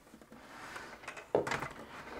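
The plastic body of a Bosch Tassimo Style coffee machine scraping softly across a tabletop as it is turned by hand, then a sudden knock about two-thirds of the way through.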